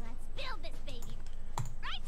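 A few clicks of a computer mouse, between short bits of speech.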